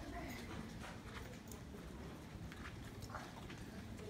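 Footsteps of several people walking on a hard corridor floor: faint, irregular clacks of shoes and sandals over a low rumble.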